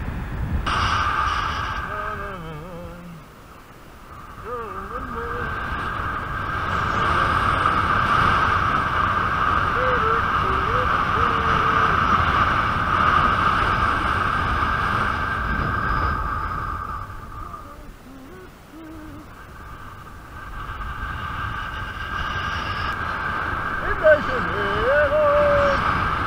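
Wind rushing over an action camera's microphone while kitefoiling, with a steady high-pitched whine over it; both fade away twice and build back up.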